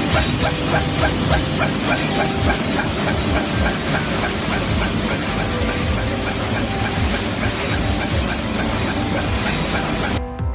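A drywall-screw thread rolling machine running, a loud, dense, steady mechanical noise, with background music mixed under it.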